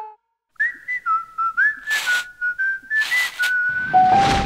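A short tune whistled one note at a time, with small slides between the notes, starting about half a second in. Light clicks and two brief hissing whooshes sound under it.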